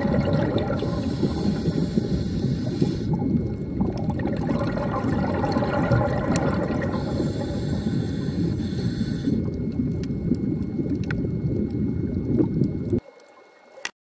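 Scuba diver breathing underwater through a regulator, picked up by the camera: a steady low bubbling rumble of exhaled air. Twice it is broken by a hissing inhalation lasting about two seconds, some six seconds apart. The sound cuts off suddenly near the end.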